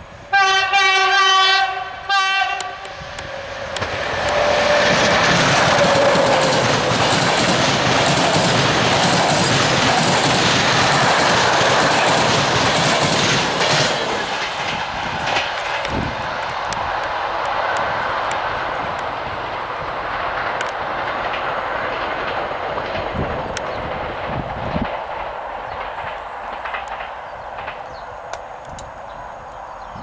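EP07 electric locomotive sounding its horn, the RP1 warning signal, for about two seconds with a brief break near the end. Then its Intercity train passes close by: a loud rush of wheels and coaches over the rails with clickety-clack, fading slowly as it moves away.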